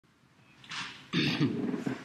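A man's breath, then a short low voiced sound, like a throat-clear or a wordless start, before speech begins.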